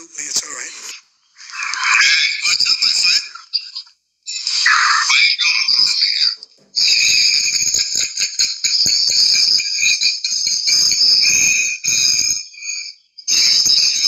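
A man laughing loudly in a high-pitched, squeaky way, in several long bursts with short breaks, the longest lasting about five seconds.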